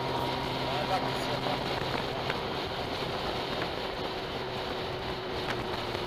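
Steady wind rush and road noise from a Honda Gold Wing motorcycle riding at highway speed, with the engine's faint hum underneath.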